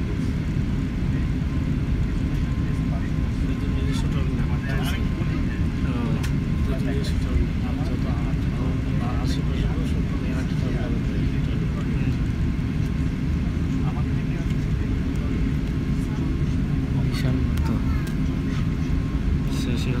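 Steady low rumble inside the cabin of an Airbus A380-800 taxiing after landing, with passengers' voices faintly in the background.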